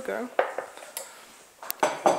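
Cutlery and kitchenware clinking: a spoon knocking on dishes in a few separate clinks, with a louder clatter near the end.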